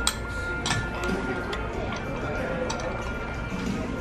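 Shop ambience with background music and a murmur of voices, with light sharp clicks of small ceramic cups being picked up and set down on a display.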